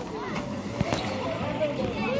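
Indistinct voices in the background, with soft splashing of pool water as a baby is drawn through it.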